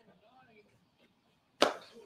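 A quiet room, then a single sharp impact, like a knock or smack, about a second and a half in, with a short ring after it.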